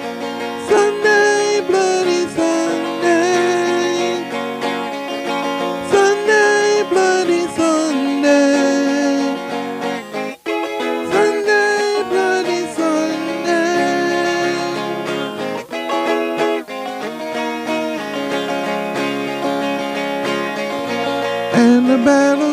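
Music: a capoed twelve-string electric guitar playing with a man singing over it.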